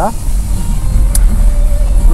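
Low road and engine rumble of a car driving on a rough, wet road, heard from inside the cabin.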